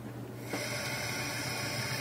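Kitchen sink faucet turned on, cold water running steadily from about half a second in, filling the pot.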